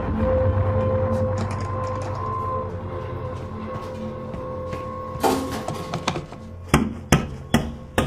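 A low, steady music drone, then four sharp knocks in the last three seconds: a hammer striking a plaster wall.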